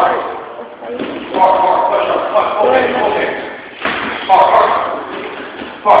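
Punches landing on a hanging heavy bag, each a sudden slam, a few times spaced a second or two apart, with voices between them.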